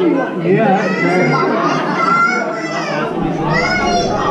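Children's voices talking and calling out over the chatter of other visitors.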